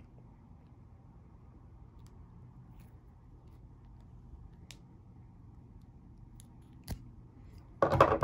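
A hand wire stripper working insulation off a 16-gauge wire: quiet handling with a few faint ticks as the clamped jaws are twisted and the insulation is pulled off, then one sharper click about seven seconds in.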